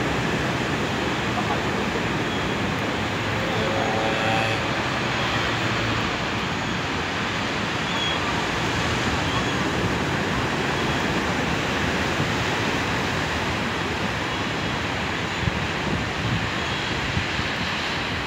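Ocean surf breaking on a rocky shore: a steady, unbroken rush of waves with wind.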